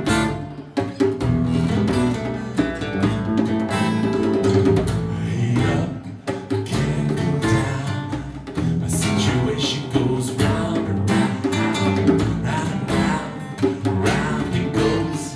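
Live acoustic band playing a song: strummed acoustic guitars over electric bass and a djembe, with a man singing.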